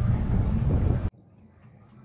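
Wind buffeting an outdoor microphone: a loud, uneven low rumbling rush that cuts off suddenly about a second in, leaving only faint background sound.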